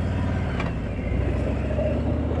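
Harley-Davidson touring motorcycle's V-twin engine running while the bike cruises down the road, heard from the rider's seat, its note shifting slightly about half a second in.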